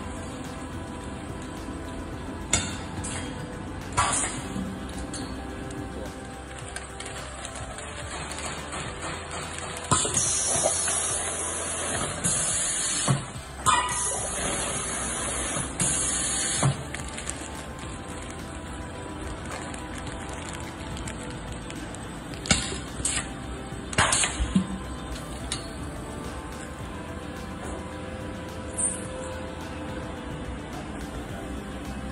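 Hot-product depositing machine running with a steady hum and a few sharp clicks, with several seconds of hissing spurts around the middle as a plastic bag is filled at the nozzle.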